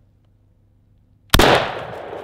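A single 12-gauge shotgun shot from a Panzer BP-12 bullpup shotgun firing a bolo round, about a second and a third in, followed by an echo that slowly fades.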